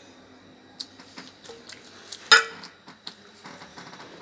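Scattered clinks and knocks of crockery and cutlery in a restaurant. The loudest is a sharp ringing clink a little over two seconds in.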